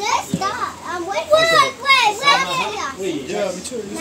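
Several children talking and calling out over one another, their high voices overlapping throughout.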